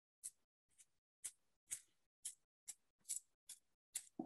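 Toothbrush bristles flicked repeatedly with a finger to spatter gold paint: a run of short, faint flicks, about two a second.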